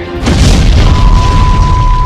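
A very loud explosion sound effect about a quarter second in, with a deep rumble that runs on. About a second in, a steady high-pitched beep joins it and holds.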